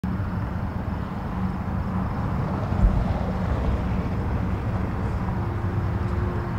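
Steady low rumble of a moving vehicle, with one thump about three seconds in.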